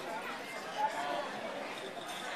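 Background chatter of many voices in a large hall.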